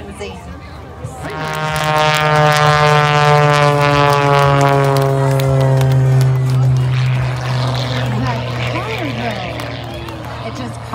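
Single-engine aerobatic propeller plane at takeoff power, lifting off and climbing away. Its engine note swells in about a second in, then sinks slowly in pitch and fades as the plane pulls away, with crowd voices faintly audible near the end.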